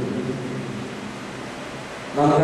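A pause between a man's chanted lines: his voice trails off at the very start, leaving a steady even hiss of background noise through the microphone.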